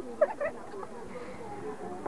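Faint, indistinct voices over a low background, with a few short squeaky chirps in the first half second.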